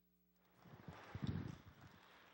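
Faint, irregular low knocks and bumps of a microphone being handled at a lectern, starting about half a second in after a brief dead silence.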